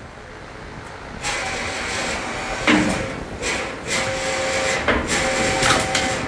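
Electric-hydraulic pump motor of a two-post car lift running in short spurts with a steady hum and whine, with several sharp metal knocks among it.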